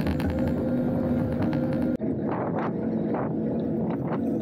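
Wind and road noise of a bicycle ride in traffic, with a steady hum underneath. The sound cuts off abruptly about two seconds in and resumes with several short swells of hiss.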